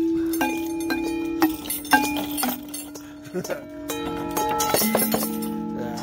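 Outdoor playground metallophone, its metal bars struck one at a time with rubber-headed mallets, playing a slow string of single notes that each ring on after the strike.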